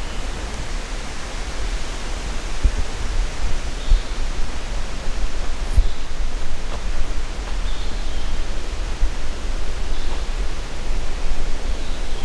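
Steady rushing outdoor noise with a heavy low rumble and irregular low thumps, with a few faint, short high chirps over it.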